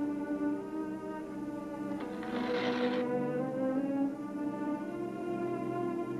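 Orchestral film score with long held string notes. About two seconds in, a sheet of paper is torn for about a second.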